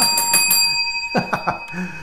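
A single bell strike ringing out: a steady, slowly fading tone whose bright high overtones shimmer and die away within the first second.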